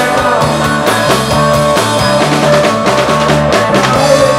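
Live rock band playing electric guitar, acoustic guitar and drums, with regular drum hits over sustained chords.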